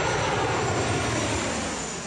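Fixed-wing aircraft engine noise: a steady rushing sound with a low rumble underneath that slowly fades.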